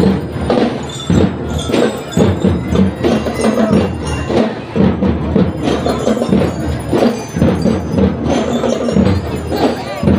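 School drum and lyre band playing: bell lyres ringing out a melody over a steady beat of marching drums.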